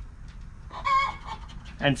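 A pet hen squawking once, a short call about a second in.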